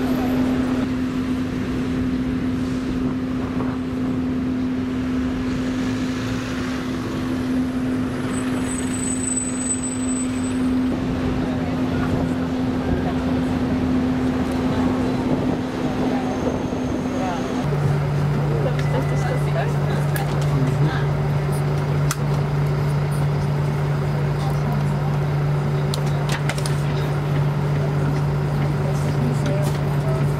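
Outdoor city street ambience: indistinct voices and road traffic, with a steady low hum that drops to a lower pitch a little over halfway through.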